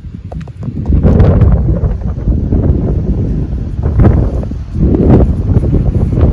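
Wind buffeting the microphone in gusts, with beach pebbles clicking and knocking together as stones are handled on the shingle.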